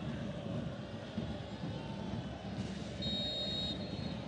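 Steady stadium crowd noise from the football ground, a low even murmur, with a short high whistle blast about three seconds in.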